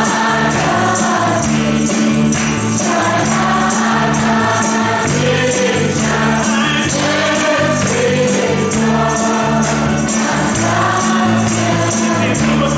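A church worship band playing a hymn: several men singing together in Khasi over electric guitars and a bass guitar through amplifiers, with the bass moving step by step under a steady beat.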